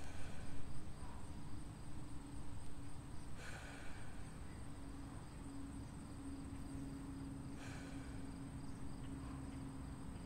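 A man taking slow, deep breaths through the mouth, one about every four seconds, each a soft rush of air. A steady low hum runs underneath.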